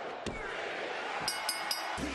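Arena crowd cheering, with a thud on the ring mat about a quarter second in. Near the end, the ringside timekeeper's bell is struck three times in quick succession, signalling the pinfall and the end of the match.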